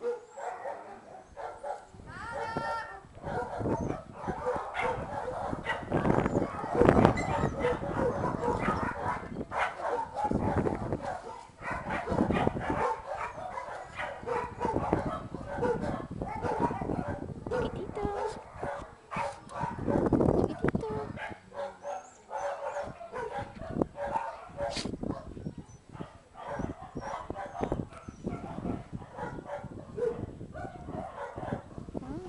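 Dogs barking on and off, with people talking indistinctly.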